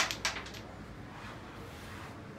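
A carrom striker flicked across a wooden carrom board, clacking against the carrom men and the rails: three or four sharp clicks in quick succession in the first half second, the first the loudest.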